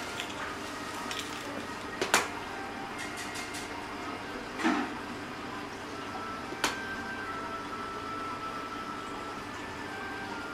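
Steady indoor background noise with three sharp knocks or clicks, about two, four and a half and six and a half seconds in; the first is the loudest.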